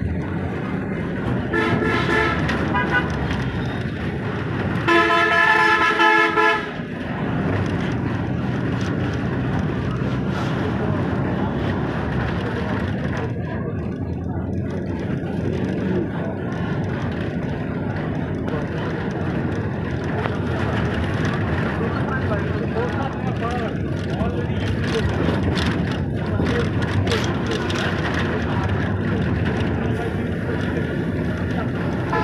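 Street traffic noise with a vehicle horn sounding twice: a shorter blast about two seconds in, then a louder one lasting about a second and a half around five seconds in. Steady road noise continues underneath.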